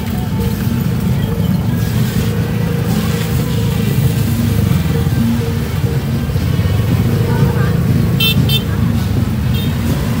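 Many motor scooter and motorbike engines running at low speed in a slow, crowded procession, a steady low rumble mixed with voices. A few short high-pitched beeps come about eight seconds in and again near the end.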